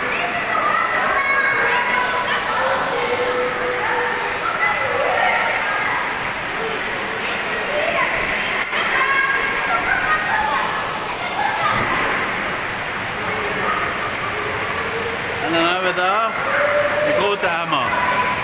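Water rushing steadily through an indoor pool's current channel, with the echoing, overlapping voices and shouts of swimmers around the pool hall.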